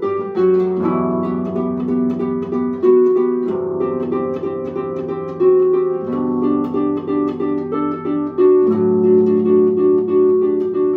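Concert pedal harp played with both hands: a plucked melody over low bass notes that ring on, the bass changing every two to three seconds. Near the end a quick run of repeated notes leads into a deeper bass note.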